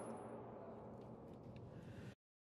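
The fading reverberation of a Beretta 9000S 9mm pistol shot in an indoor range booth, dying away into a low, faint steady hum with a few faint clicks. The sound cuts off suddenly at the very end.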